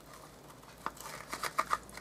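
Faint rustling and light ticks of fingers handling a small paper gift box and pulling at the linen thread tied around it, starting about a second in.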